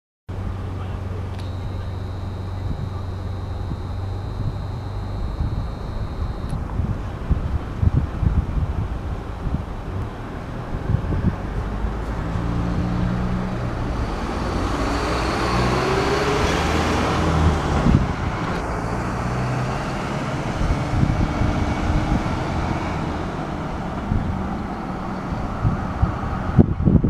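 Street traffic noise at night: a steady low hum, with a road vehicle passing that swells up around the middle and fades away. A thin high tone holds for about five seconds near the start.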